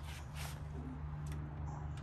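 A cat eating a small piece of smoked turkey sausage, heard as a few faint, soft clicks of chewing over a steady low background hum.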